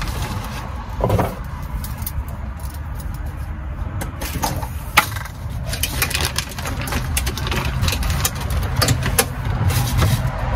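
Bungee cord hooks clicking and knocking against metal as cords are stretched over a bucket toilet and hooked in place, a few sharp clicks spread through, the sharpest about halfway. Under it runs a steady low rumble.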